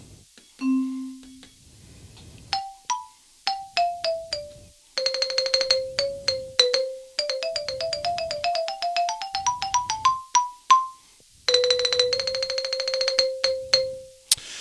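Sampled xylophone sound from a MalletKAT Pro 8.5 electronic mallet controller with a GigKAT module. A few single notes stepping down in pitch come first, then a fast roll on one note that climbs into a rising run of rolled notes, and it ends with another fast roll held on one low note.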